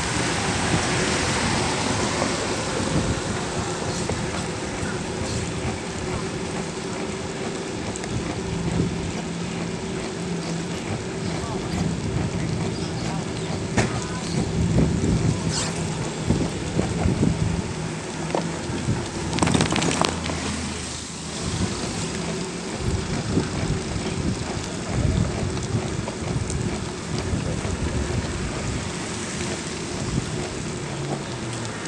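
Wind buffeting the microphone and tyres hissing on a wet road during a bicycle ride, with motor traffic running nearby and one louder vehicle passing about twenty seconds in.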